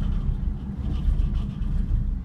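Gondola cabin rumbling and rattling as it rolls past a lift tower's sheaves on the haul rope, heard from inside the cabin, with a steady low hum underneath.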